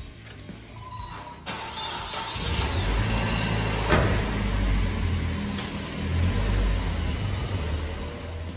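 Car engine running with a low rumble that comes up about two seconds in, as the car pulls away. There is a single sharp click about four seconds in.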